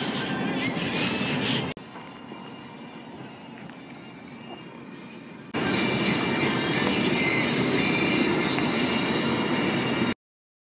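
Steady road and engine noise heard inside a moving car's cabin. It drops suddenly to a quieter level about two seconds in and jumps back up just past the halfway point.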